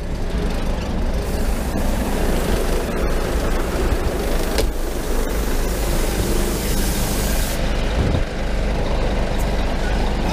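Scania truck's diesel engine idling steadily, with a hiss that starts about a second in and stops suddenly near the end, and a couple of sharp clicks along the way.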